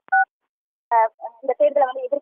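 A man's speech over microphones, broken at the very start by a click and a short two-tone beep, then a moment of dead silence before the speech resumes.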